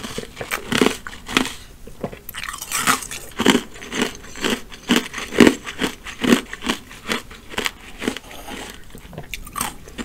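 Close-miked mouth crunching ice cubes, about two crunches a second.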